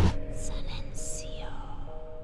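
A single whispered word, most likely "silencio", over soft music of a few held notes, slowly getting quieter.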